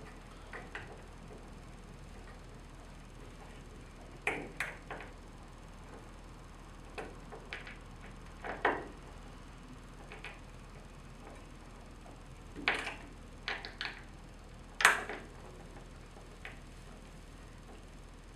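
Scattered small clicks and taps as a paddleboard side fin is fitted and its set screws are driven with a screwdriver into the threaded plastic of the fin box. There are about a dozen short, irregular clicks, the loudest late on.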